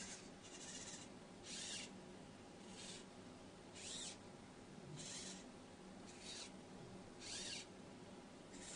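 Faint, short whirs from the small servo motors of a PALRO humanoid robot, about one a second, each with a brief rise and fall in pitch, as the robot makes small idle movements of its head.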